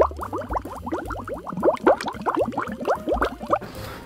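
A large pot of water with pork and beef in it at a hard rolling boil, bubbles bursting in a quick string of short rising bloops over a low steady hum. The meat is being parboiled to throw off its scum.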